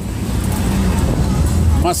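Low, uneven rumble of wind buffeting a phone microphone high up on a Ferris wheel, with faint fairground background noise underneath.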